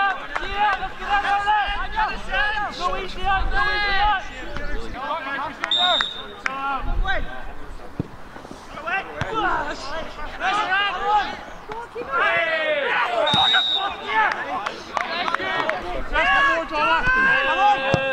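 Football players shouting and calling to each other across the pitch, several voices overlapping, with two short, high referee's whistle blasts about six and thirteen seconds in and the occasional thud of the ball being kicked.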